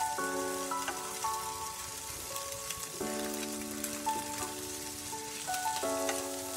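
Winged beans and scrambled egg sizzling steadily in a frying pan as they are stirred, with a faint crackle. Background music of sustained notes and chords plays over it.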